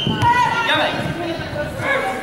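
Several people's voices, some raised and shouting, echoing in a large hall during a karate sparring bout.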